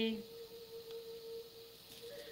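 A singing bowl ringing one steady tone that holds at a single pitch and fades slightly near the end.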